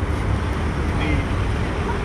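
Steady low rumble of city street traffic, filling the pause between spoken phrases.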